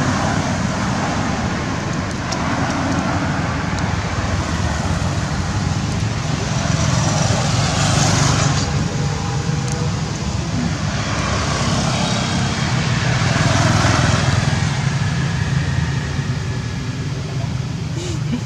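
Steady road traffic noise with a low rumble, swelling louder about eight seconds in and again about fourteen seconds in as vehicles pass.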